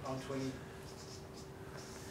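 Marker pen writing on a flip-chart paper pad: faint strokes as a number is written and a line is drawn, after a brief bit of a man's voice at the start.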